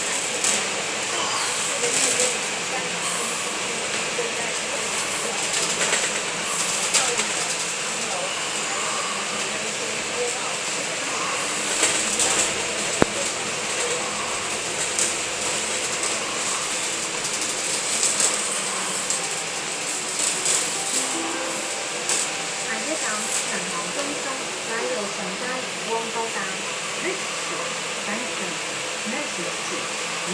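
Cabin noise of a Volvo Olympian 12m double-decker bus under way: a steady rush of engine and road noise with small rattles and clicks from the body and fittings, and one sharp click about halfway through. Indistinct voices murmur underneath.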